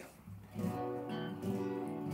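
Acoustic guitar being strummed: chords start about half a second in and ring on as the intro of a song begins.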